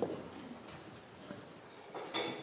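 Quiet hall with one short knock at the start and a few faint ticks after it, from a pen and papers on a table as a document is signed.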